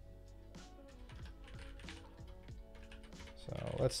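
Typing on a computer keyboard: a run of quick, irregular keystrokes as code is entered.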